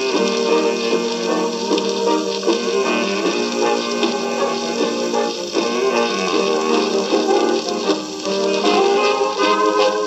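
Jazz band recording playing from a shellac 78 rpm record on a turntable, with almost no bass.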